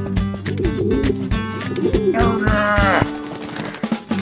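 Cartoon background music continues on guitar. Around two seconds in, a wordless vocal sound slides steeply down in pitch over about a second.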